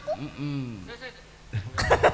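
A person's voice on the stage microphone: a short wordless vocal sound, then a cough near the end.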